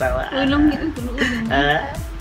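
A man and a woman laughing hard together, in repeated bursts of pitched voice with a lower, drawn-out note in the first second.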